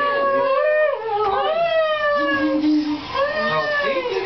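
Several voices in long, overlapping wails, each pitch sliding up and down over a second or more.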